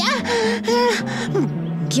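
A cartoon character's voice making short vocal sounds over background music with sustained low notes; near the end a boy's voice begins asking "kya" (what).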